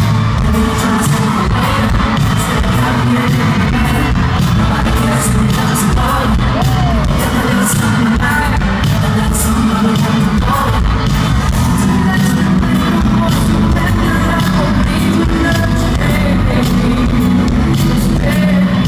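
Live pop-funk band music with a lead vocalist, played loud through an arena PA and recorded from the crowd on the floor, with a steady beat.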